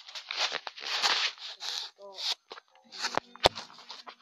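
Handling noise from the phone filming: rubbing and rustling on its microphone while it is moved and repositioned, then two sharp knocks a little after three seconds in.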